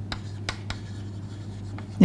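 Chalk writing on a chalkboard: faint scratching strokes with a few sharp taps as the chalk strikes the board, over a low steady hum.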